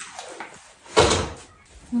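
A single sharp knock about a second in, dying away quickly, like a wooden door, drawer or lid being shut.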